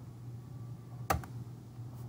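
One sharp click about a second in, followed by a fainter one, from a computer mouse button as an on-screen dialog is dismissed. A steady low room hum lies under it.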